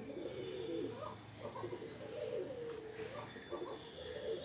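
Indian fantail pigeon cooing: a continuous run of low, warbling coos that rise and fall in pitch, with a rising swoop about every second.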